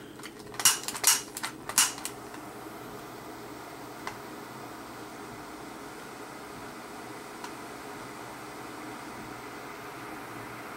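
A butane mini torch lighter: several sharp clicks about a second in, then the steady hiss of its jet flame as it heats heat-shrink tubing round a coin cell battery.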